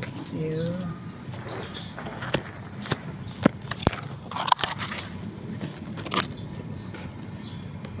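Dry grass of a small bird's nest and shrub leaves rustling and crackling as a hand parts them close to the microphone, with about half a dozen sharp clicks of handling scattered through. A short spoken word near the start.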